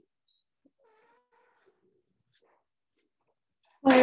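Near silence, broken about a second in by a faint, brief high-pitched call. A woman's voice starts speaking at the very end.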